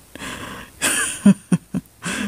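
A woman's short breathy laugh, loudest about a second in, followed by a couple of small clicks.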